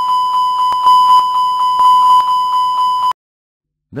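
Airbus A320 master warning aural alert, the continuous repetitive chime: a loud, steady high tone with rapid repeating pulses that lasts about three seconds and cuts off abruptly. It signals a red-warning-level failure and goes with the flashing red MASTER WARN light.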